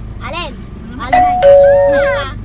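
Two-note ding-dong chime like a doorbell: a higher note about halfway through, a lower note a moment later, the two held together for about a second.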